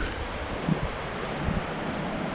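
Steady wind noise on the microphone, a continuous rushing hiss.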